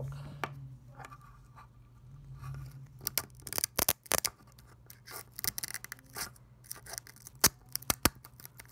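A blown small loudspeaker being pried and torn apart by hand to get at its voice coil: irregular clicks, snaps and scraping of the cone and frame, sparse at first and thicker from about three seconds in, over a low steady hum.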